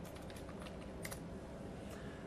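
Faint, irregular clicks of typing on a computer keyboard over a low steady hiss, one click a little louder about a second in.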